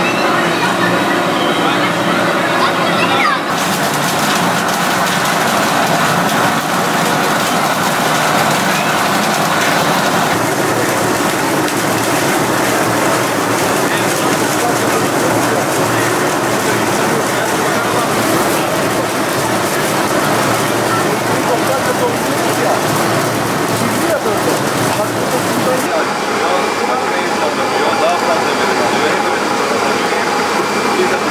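Olive mill machinery running steadily, a continuous mechanical hiss and rumble, with many people, adults and children, talking over it at once. The noise fills out about three seconds in and thins near the end.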